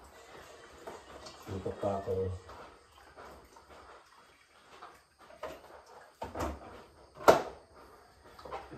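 Kitchen handling sounds: a few soft knocks of items being moved on a counter shelf, then one sharp click about seven seconds in, the loudest sound here. A short stretch of voice comes about two seconds in.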